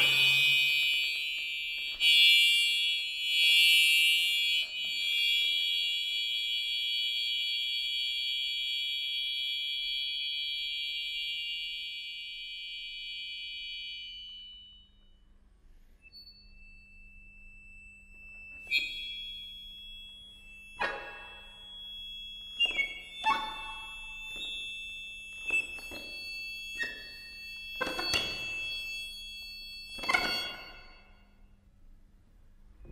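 Solo accordion playing contemporary music: a loud cluster of high reeds is held and fades away about halfway through. Then a soft low note is held under a thin high tone, broken by a string of sharp, sudden chord stabs.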